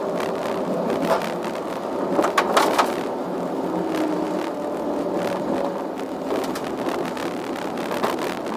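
Glider rolling out along the runway on its landing wheel, heard from inside the cockpit: a steady rumble and rattle of the wheel and airframe with air rushing over the canopy. A few sharp knocks come about two to three seconds in.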